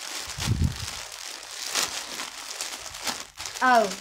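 Plastic bags crinkling and rustling as bagged clothes are handled, in a scatter of short irregular rustles, with a dull low bump about half a second in.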